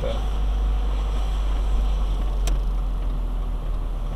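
Steady low rumble of a car driving slowly, heard from inside the cabin, with a single sharp click about two and a half seconds in.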